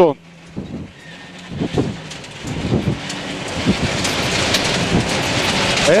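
Citroën C2 rally car at speed on gravel, heard from inside the cabin: the engine runs under a dense rush of tyre noise and gravel and stones rattling against the underbody, which grows steadily louder from about two seconds in.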